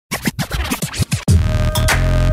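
Electronic intro music opening with a quick run of DJ record scratches for about a second, then a heavy bass note held under a steady tone.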